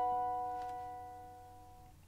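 A B7 chord on a cavaquinho ringing out after a single strum, dying away steadily until it is nearly gone near the end.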